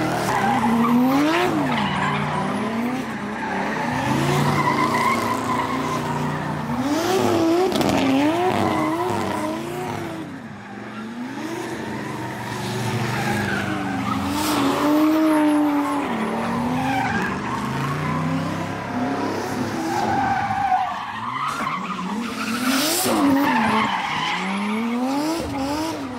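Cars drifting in donuts: engines revving up and down over and over as the throttle is worked, over the steady squeal and hiss of rear tires spinning against the pavement.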